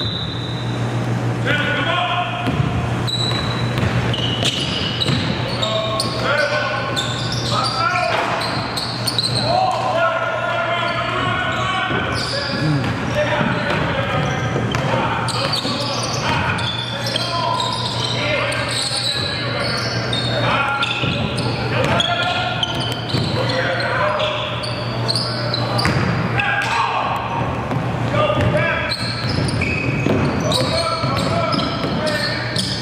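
Basketball being dribbled on a hardwood gym floor during live play, with players and onlookers calling out in a reverberant gym over a steady low hum. A short referee's whistle sounds right at the start.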